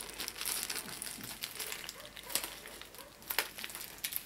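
Thin clear plastic zip-lock bag crinkling as it is handled and a brooch is slid out of it, with a couple of sharper crackles in the second half.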